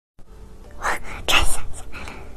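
Brief whispering: a couple of short, breathy syllables about a second in, after a moment of silence at the start.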